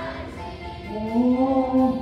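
A child soloist singing into a microphone over musical accompaniment, rising into one loud held note about a second in.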